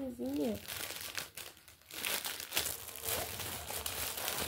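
A clear plastic bag of wrapped sweets crinkling as it is handled and pulled open, in irregular rustling bursts. A short vocal sound comes right at the start.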